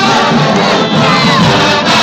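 A marching band playing loudly while a crowd shouts and cheers over it.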